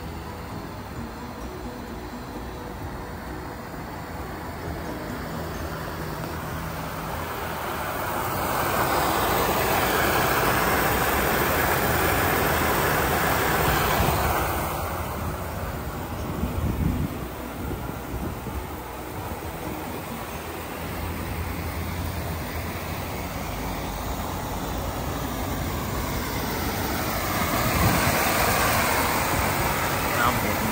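Inflatable water slide's electric blower motor running steadily, with the hiss of water spraying from the slide's sprinkler hose. The spray hiss grows louder twice, about eight seconds in and again near the end.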